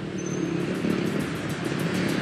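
A motor vehicle on the street, its engine and tyre noise growing steadily louder as it approaches.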